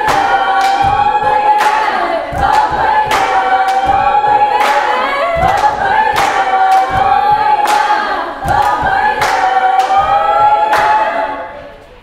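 Female choir singing a cappella, holding long notes over a steady beat of hand claps and foot stomps about every three-quarters of a second. It dies away near the end.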